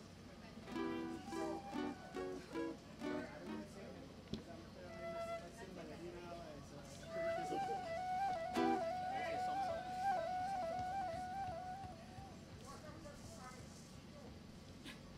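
Acoustic guitar plucked in short rhythmic notes, then a flute trilling on one held note for several seconds, played softly as the parang band warms up before the next song.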